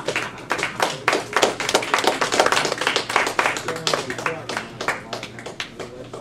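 Audience applauding: many hands clapping at once, loudest in the middle and thinning out near the end.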